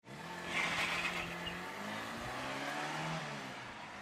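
Animation sound effect of a car engine revving, its pitch wavering, over a hiss like wheels spinning in sand. It cuts in suddenly and eases off slightly near the end.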